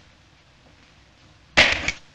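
A single sudden, loud wet splat about one and a half seconds in, dying away within half a second: a handful of soft clay smacked into a face.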